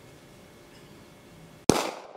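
Faint room tone, then a single loud pistol shot near the end that rings off as it decays.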